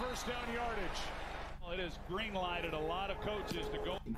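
A man's voice, football TV broadcast commentary from the game highlights, playing at low level under the reactor's microphone.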